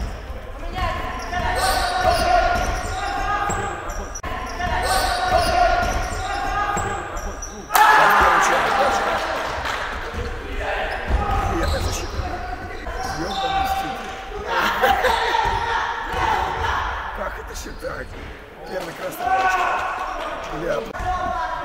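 Live basketball game in a gym hall: the ball bouncing on the hardwood floor and footfalls, with players and spectators shouting. A sudden louder burst of voices comes about eight seconds in.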